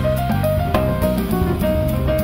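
Live jazz piano trio playing a Spanish-flavoured flamenco-jazz tune: grand piano, electric bass guitar and drum kit with cymbals, all playing together.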